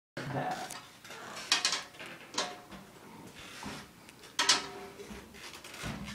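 A drum struck a few separate times with a stick, each hit leaving a short pitched ring, as the drum is being tuned by ear.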